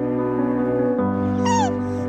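Soft background music holding sustained chords that shift about a second in. About a second and a half in, a woman's high crying wail, a brief sob that falls in pitch.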